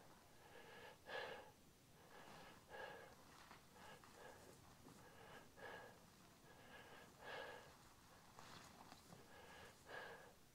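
Near silence with faint, regular breathing, one breath about every one and a half seconds, as of a person walking.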